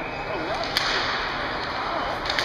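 A single sharp crack of a hockey stick about three-quarters of a second in, as the puck is dropped at a centre-ice faceoff, over the steady hubbub of an ice arena with faint chatter.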